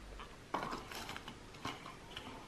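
Faint handling of a glass candle jar in the hand, with two light knocks or clicks, one about half a second in and one near the end.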